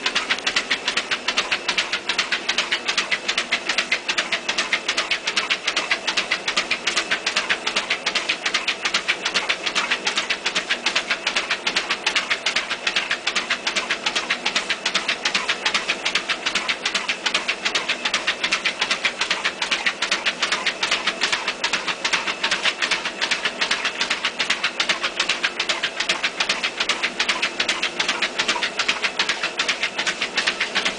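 An American Staffordshire Terrier's paws patter fast and evenly on a running treadmill belt, over the steady hum of the treadmill's motor.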